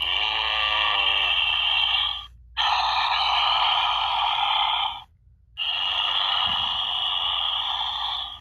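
Spirit Halloween Billy Butcherson sidestepper animatronic playing a raspy, breathy sound effect through its speaker, three times, each about two seconds long with short pauses between.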